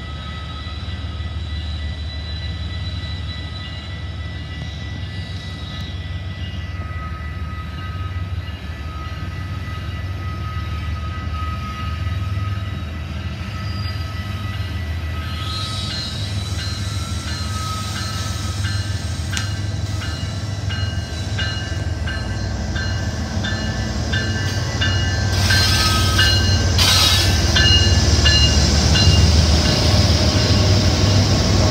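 Diesel freight locomotives approaching and drawing alongside, their engine rumble growing steadily louder. From about halfway in, a regular ringing repeats, from the level-crossing bells, and it grows louder near the end as the lead unit arrives.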